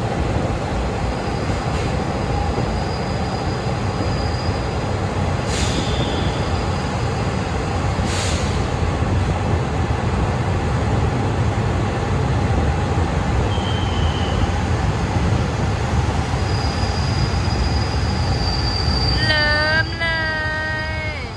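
Passenger train running slowly, heard from an open coach window: a steady rolling rumble of wheels on rail with high wheel squeals coming and going. There are two sharp clacks, about five and eight seconds in, and a pitched tone sets in near the end.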